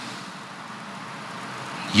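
A pause in speech: a steady, even hiss of background room noise, with no distinct event.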